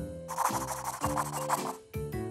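Scratchy scribbling of colouring in on paper, lasting about a second and a half, over light background music.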